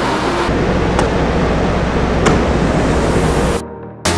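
A loud, steady rushing noise with two sharp clicks, about a second and two and a quarter seconds in; it cuts off suddenly shortly before the end.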